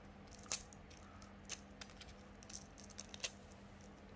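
Faint, scattered light clicks and scratches of a sheet of sandpaper and a thin enamelled copper wire being handled between the fingers, over a low steady hum.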